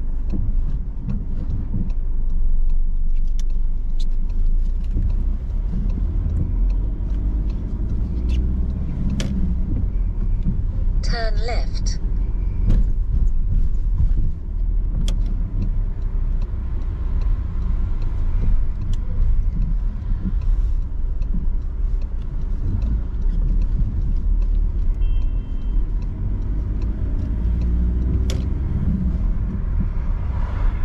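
Car interior sound while driving: a steady deep rumble of engine and tyres, with the engine note rising several times as the car accelerates. A brief warbling sound about eleven seconds in.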